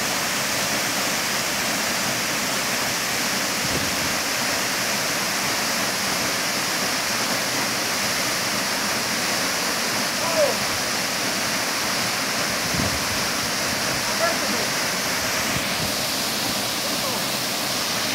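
Waterfall pouring into a deep plunge pool: a steady, unbroken rush of falling water.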